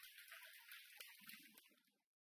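Near silence with faint rustling and a few soft clicks, one a little sharper about a second in: a head-worn microphone being handled as it is taken off.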